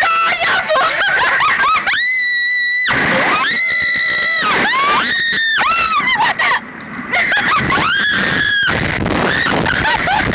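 Two young women screaming on a reverse-bungee slingshot ride as it flings them into the air: a series of long high-pitched screams, the longest held steady for nearly a second about two seconds in, with more wavering screams after it.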